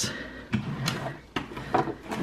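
A desk drawer being pulled open, with several light knocks and rattles from the sewing supplies inside it.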